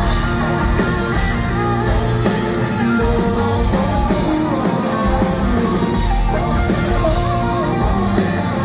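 Live rock band playing loudly: electric guitars over a steady drum beat, heard from among the crowd in a concert hall.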